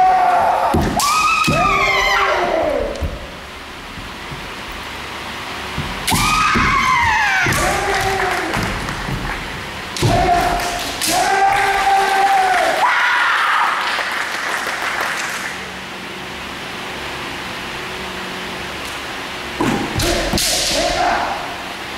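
Kendo fighters' kiai: long, drawn-out shouts that rise and fall in pitch, in three bouts (at the start, about six seconds in and about ten seconds in), each opened by sharp impact thuds as they clash. It is quieter from about thirteen seconds on.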